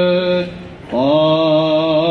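A male voice sings Orthodox Byzantine chant in long, drawn-out held notes. It stops for a breath about half a second in and starts again on a new note just before a second in.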